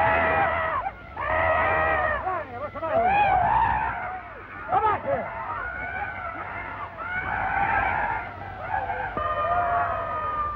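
A series of long, high-pitched wavering cries, one after another, each lasting about a second, over the low hum of an old film soundtrack.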